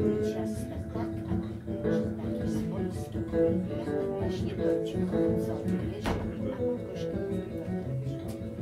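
Acoustic guitar strummed and picked in a steady rhythm during an instrumental passage of a live folk song, with a sharp click about six seconds in.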